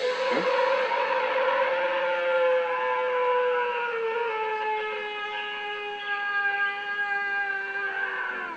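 A sound-effect creature scream played as Bigfoot's roar and screaming: one long, loud howling call whose pitch sinks slowly throughout.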